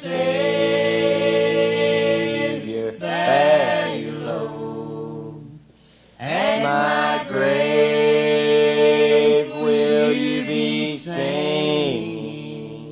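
Gospel group of men's and women's voices singing a hymn in close harmony, holding long drawn-out chords, with a short break about halfway through.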